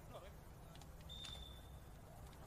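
Near silence: faint venue ambience, with one faint, steady high tone lasting under a second about midway through.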